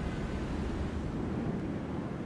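A steady low rumble with a hiss above it, with no clear tones or strokes.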